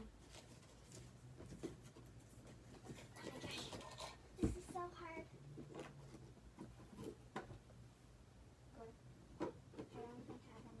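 Faint knocks, clicks and rustling of someone moving about and handling things out of sight, with one sharper thump about halfway through.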